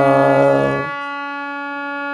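Harmonium holding one steady reed note while a man sings a note along with it. The voice stops about a second in and the harmonium note sounds on alone.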